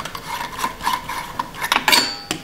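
Plastic LED bulb being twisted out of a desk lamp's socket: a scraping rub with an on-and-off squeak, then a few sharp clicks near the end.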